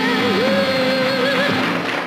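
A man singing in a female-impersonation number, holding one long high note after a quick dip in pitch, over instrumental accompaniment. The note breaks off a little before the end.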